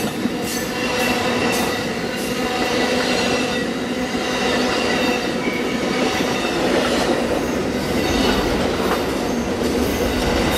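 Amtrak Auto Train's Superliner cars, then its enclosed auto-carrier cars, rolling past at close range: a steady, loud rumble of steel wheels on rail. Faint high-pitched wheel squeal runs through it, with scattered light clicks.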